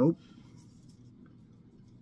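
Near silence: room tone, with a faint scratchy rustle in the first half-second.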